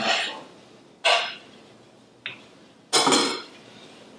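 Kitchen utensils and cookware being handled on a countertop: a clatter about a second in, a small click a little after two seconds, and a louder clatter near the end.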